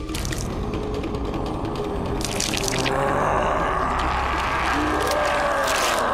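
Soundtrack audio from an animated horror cartoon: a steady, dense mix of eerie effects and music with wavering tones, and short sharp hissing bursts about two seconds in and again near the end.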